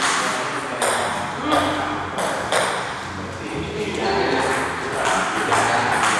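Table tennis rally: the celluloid ball clicking sharply off the paddles and the table, a hit about every 0.7 seconds in the first half, with fewer in the middle and more near the end.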